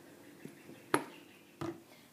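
Kitchen utensils handled on a benchtop: a light tap, then a sharp click about a second in and a dull knock near the end, over a faint steady hum.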